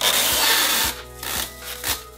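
Plastic masking film with its adhesive tape edge (a masker) being pulled off the roll and pressed onto the air conditioner: one long tearing rasp lasting about a second, then two shorter pulls.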